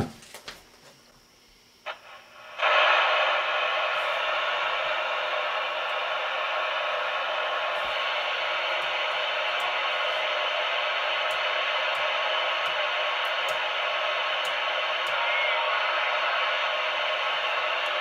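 Static from a Realistic TRC-474 CB radio's speaker: after a quiet moment it comes in suddenly about two and a half seconds in as the volume is turned up, then runs as a steady, narrow-band hiss with no station heard. Faint clicks over it come from the channel selector being stepped through channels.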